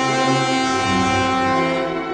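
Orchestral opera music in which low brass holds long sustained chords, the low notes shifting about a second in.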